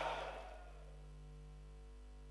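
A quiet pause: faint, steady electrical hum from the hall's sound system, with a fading echo in the first half-second.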